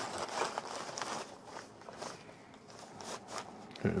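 Cloth lunch bag rustling and crinkling as it is handled, unfolded and opened by hand, with faint scattered clicks and scuffs.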